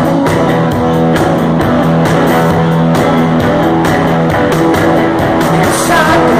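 Live rock band playing an instrumental passage between sung lines: strummed electric guitars, bass and drums, with no singing.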